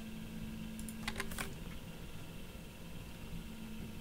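Computer keyboard keystrokes: several quick key clicks about a second in, entering drafting commands, over a steady low hum.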